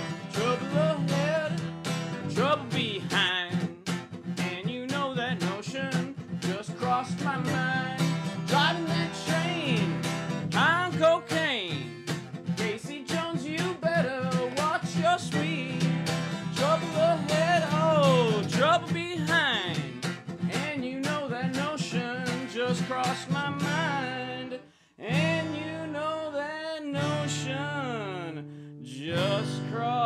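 Acoustic guitar played solo, strummed steadily with melody lines picked over the chords. The playing drops out briefly about five seconds before the end, then resumes more sparsely.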